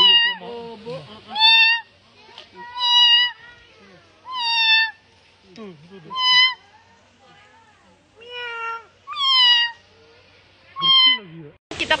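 A puma calling with high-pitched, meow-like cries, about eight of them, each roughly half a second long and a second and a half apart, several falling slightly at the end.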